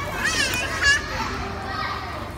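A young child's high-pitched voice calling out during the first second, against the noisy background of children playing.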